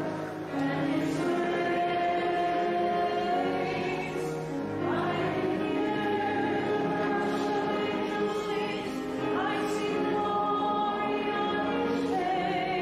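A choir singing, holding long sustained chords.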